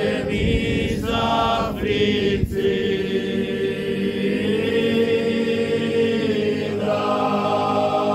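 Men's choir singing a Sardinian popular sacred song a cappella, in long held chords with a few short breaks between phrases and a change of chord about seven seconds in.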